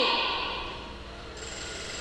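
The tail of a loud shouted cry dying away in a large hall over about a second, leaving steady room noise with a faint high whine that comes in about halfway through.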